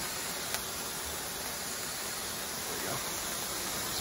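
A grid of burning firework lances, a steady hiss, with a single faint tick about half a second in.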